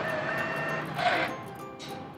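Meal-ticket vending machine taking in a banknote and printing the ticket: short mechanical whirring about a second in and again near the end, over steady background music.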